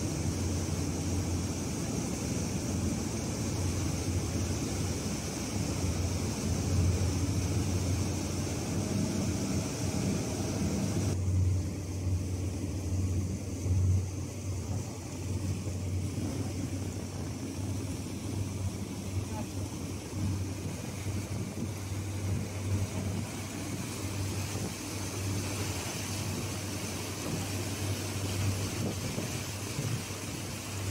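Small boat's engine running with a steady low drone under the rush of water and wind along the hull. The hiss eases off about eleven seconds in.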